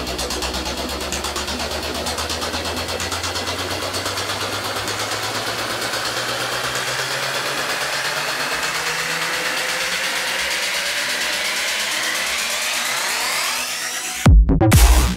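Trance music build-up: a fast, even drum roll with a synth sweep rising steadily in pitch. The deep bass notes fall away about halfway through.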